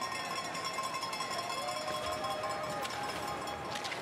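Spectators' cowbells ringing continuously along a cross-country ski course, over a faint wash of crowd noise with distant calls.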